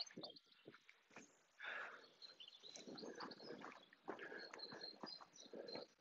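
Near silence outdoors: faint distant bird chirps and soft scattered rustles of the camera being carried.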